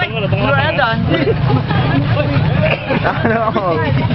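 Crowd babble: many people talking over one another at once, with a steady low rumble underneath.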